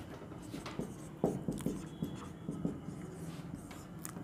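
Marker pen writing on a whiteboard: a run of short strokes and taps, the sharpest ones about a second in.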